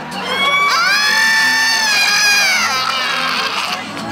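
A high-pitched shriek from a person's voice, held for about two and a half seconds starting just under a second in, amid crowd noise and cheering.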